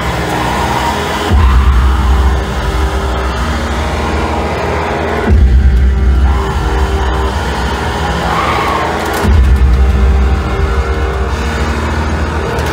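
Loud live music: a droning backing with held tones, three heavy bass booms about four seconds apart, and a woman's voice singing into a handheld microphone.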